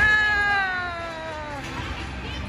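A child's long, high-pitched scream that slides steadily down in pitch and fades out over about a second and a half.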